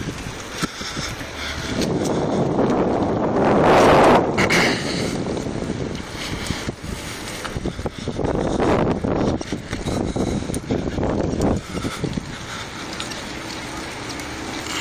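Wind buffeting the microphone of a phone carried on a moving mountain bike, with two louder gusts: the first peaks about four seconds in, the second a few seconds later.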